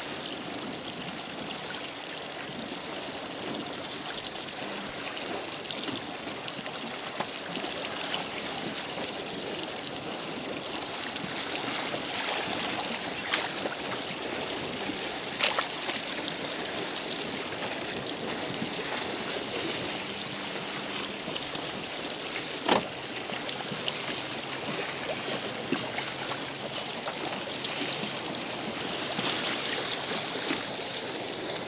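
Sea water lapping and splashing close by, a steady wash broken by a few sharp slaps, the sharpest about three-quarters of the way through.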